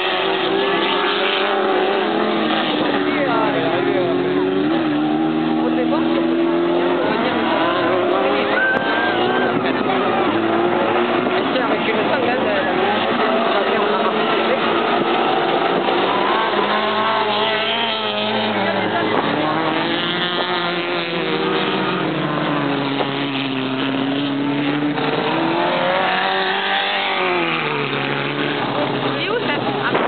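Several autocross race cars racing on a dirt track, their engines revving up and down as they accelerate out of and lift into the bends, several engine notes overlapping.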